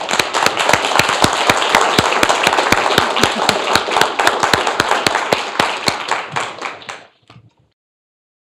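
Audience applauding, many hands clapping at once, dying away near the end.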